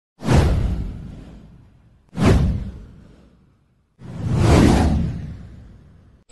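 Three whoosh sound effects for an animated news title intro, about two seconds apart, each with a deep low rumble: the first two hit suddenly and fade away, the third swells up and then fades.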